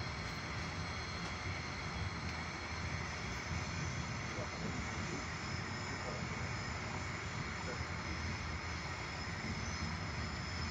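Steady running noise of an InterCity passenger coach on the rails, heard from inside the carriage.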